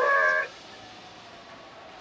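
A short high-pitched vocal sound, a brief laugh or squeal, rising at the start and held for about half a second, then only a low background.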